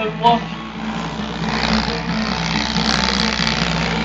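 Electric fan running steadily, a whirring hum with rushing air. A brief voice sound comes just after the start.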